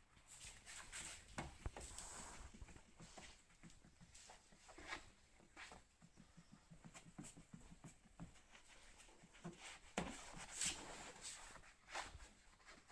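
Faint, irregular rubbing and wiping strokes of hands and a cloth across wet, soapy car rear-window glass during window tinting, with louder strokes about a second in and near the end.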